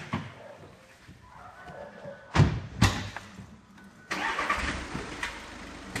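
Car door shut with two heavy thumps about two and a half seconds in, then the car's engine starts about four seconds in and settles into a steady idle.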